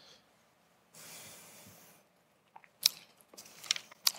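A man's quiet breath and mouth noises at a close microphone: a soft intake of breath about a second in, then a few faint mouth clicks before he speaks again.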